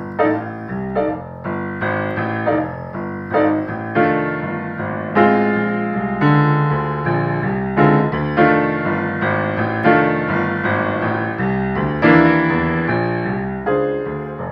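Acoustic grand piano played with both hands, a blues in F: chords and melody notes struck in a loose rhythm, each ringing and fading, with a few heavier accented chords.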